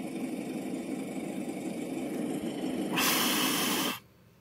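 Cartoon car engine sound effect running steadily, heard through computer speakers. About three seconds in it turns into a louder, harsher rush that cuts off abruptly at the end.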